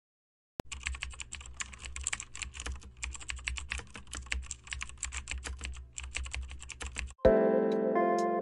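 Computer keyboard typing: rapid, uneven keystrokes for about six and a half seconds, beginning after a brief silence. Near the end the typing stops and guitar notes begin.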